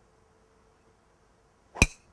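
A golf driver striking a ball: one sharp, loud crack with a brief ring, near the end.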